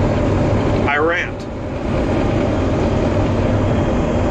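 Steady low rumble of a truck on the move, heard from inside the cab. About a second in comes a brief vocal sound from the driver.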